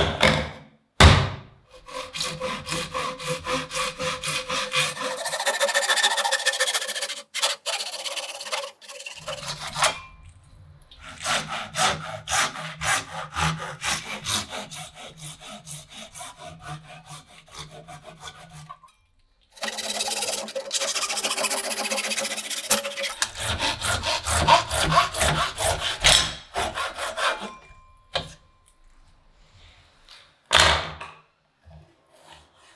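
A hand saw cutting through a PVC pipe, rapid back-and-forth strokes in three long runs separated by short pauses. A few sharp knocks come just before the first run.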